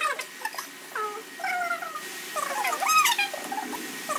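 A string of short animal calls, each rising and falling in pitch, loudest about three seconds in.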